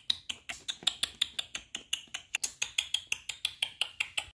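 Rapid, slightly uneven series of short smacking clicks, about seven or eight a second: chewing and lip-smacking noises made by mouth to imitate a baby doll eating.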